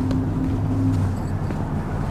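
Steady low rumble of a motor vehicle running nearby, with a faint steady hum that stops about a second in.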